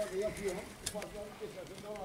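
Quiet background talking, with one light click a little under a second in.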